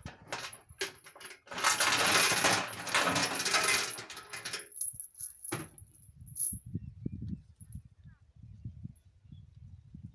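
A metal chain clinking, then rattling and dragging noisily against a rusty steel drum for about three seconds, with a sharp clank or two after it. Then only a low, uneven rumble.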